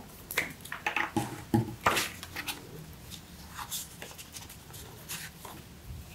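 Plastic glue stick being uncapped and handled: a series of light clicks and taps from the cap and tube, most of them in the first two seconds and fainter after.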